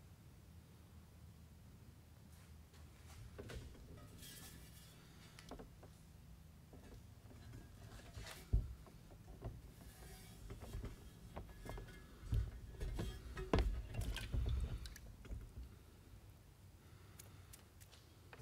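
A steel plate being handled into a plastic tub of diluted vinegar solution: faint knocks and one sharp tap about eight and a half seconds in, then liquid sloshing and handling noise a few seconds later.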